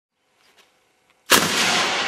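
Hairspray-fuelled PVC combustion potato cannon firing a cabbage head: one sudden loud bang about a second and a quarter in, with a loud rushing tail lasting most of a second.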